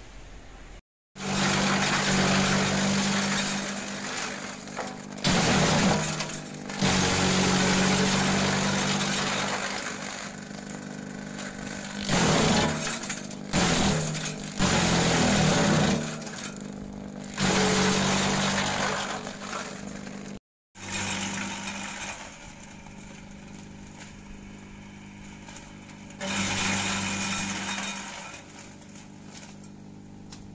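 Kelani Composta KK100 electric shredder running with a steady motor hum. Green gliricidia branches fed into its hopper are chopped in several loud, crackling bursts.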